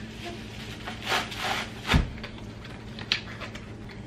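An eyeshadow palette being slid back into its packaging: rustling and rubbing about a second in, one thump about two seconds in, then a short click.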